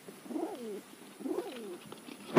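Domestic pigeon cooing: two short coos, each rising and falling in pitch, about a second apart.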